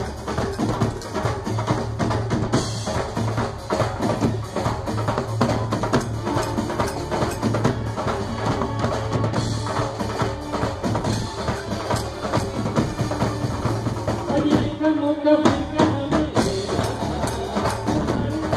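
Live percussion ensemble playing a fast, busy rhythm together: a dhol, several snare-type drums and a drum kit. The drumming briefly thins out about fifteen seconds in, then resumes.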